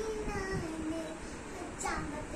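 A young boy singing a kids' song, holding long notes that slide between pitches, with a short high rising squeal near the end.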